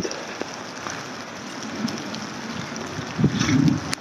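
Wind on a handheld phone's microphone outdoors: a steady rushing noise, with a brief louder low rumble about three seconds in.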